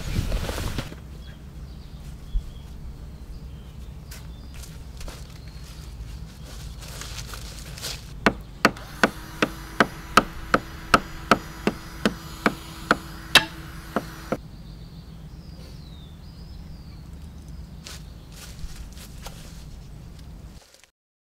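A run of about a dozen sharp hammer blows on wood, about two a second, starting about eight seconds in: a small wooden mailbox being nailed together. Cloth rustles briefly at the start.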